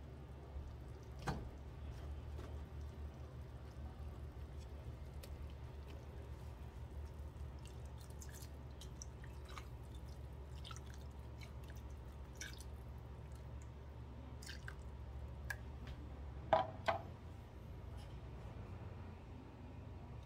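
Water poured from a plastic measuring cup into a pan of braising pork hock, with scattered drips and small pops of liquid over a steady low hum. The hum stops about three-quarters of the way through. There is a short knock about a second in and a brief clink near the end.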